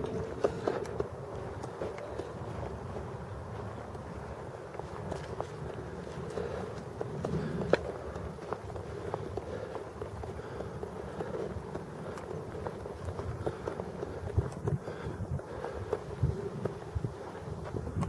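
Footsteps of a hiker walking steadily along a grass and dirt path, a rough continuous shuffle with small knocks and clicks throughout.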